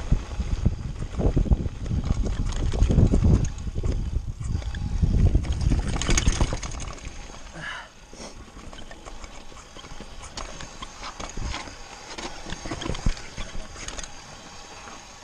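Mountain bike rolling fast down a rocky gravel trail, heard from a helmet camera: tyre rumble, wind on the microphone and the bike rattling over stones. It is loud for about the first six seconds, then quieter with scattered clicks and knocks as the bike slows.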